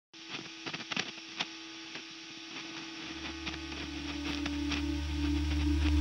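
Opening of a death metal track: a steady electrical hum with scattered crackles and clicks. A deep low drone comes in about halfway through and swells louder.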